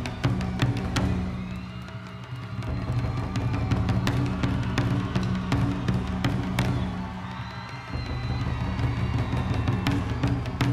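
Ensemble of large taiko drums struck with wooden sticks, strikes falling irregularly over a sustained low drone, easing off briefly twice before picking up again.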